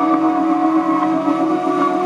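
Ambient meditation music: a steady drone of several held tones, with no beat.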